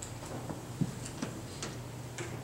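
A pause in speech. Steady low room hum with a few faint, scattered clicks, about four of them over a second and a half.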